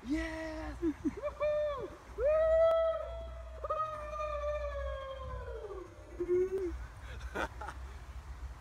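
A man yelling in celebration after holing a putt: a few short whooping yells, then one long drawn-out cry that slowly falls in pitch.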